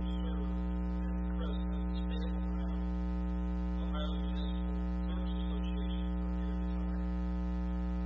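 Steady electrical mains hum, a buzz with many overtones that stays level throughout and is the loudest sound. A man's voice is faint and intermittent beneath it.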